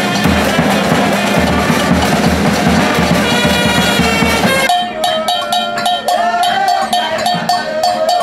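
Brass band playing a lively tune with bass drum and cymbals. A little past halfway it cuts to voices singing over a sharp, steady clicking percussion beat.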